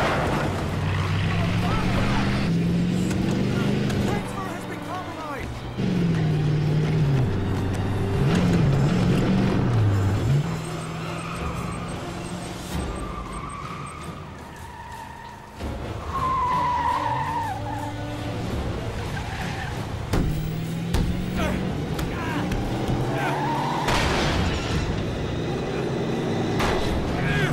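Action-film soundtrack: an SUV's engine revving up and down with tires squealing, mixed with dramatic music.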